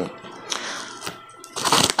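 Faint crinkling and rustling of a yellow padded paper mailer envelope being handled.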